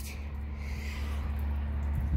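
Steady low rumble with a faint steady hum and light hiss: outdoor background noise on the microphone.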